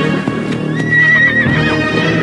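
A horse whinnies once, a wavering high call just under a second long, over background music.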